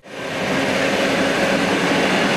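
Suburban electric multiple-unit train (elektrichka) passing at speed, its wheels running on the rails in a steady rush. The noise comes in abruptly at the start and holds steady.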